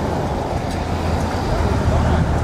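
Outdoor street noise: a steady low rumble with voices chattering in the background.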